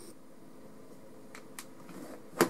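Quiet room tone with two faint clicks about one and a half seconds in, as a small bench power supply is picked up and handled.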